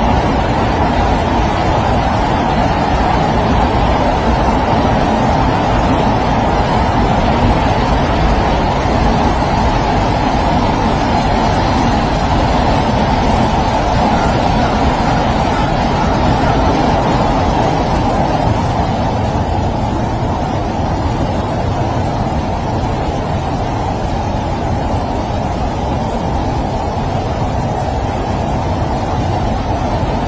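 Steady, loud rushing roar of a fast-flowing muddy flash flood, easing slightly in the second half.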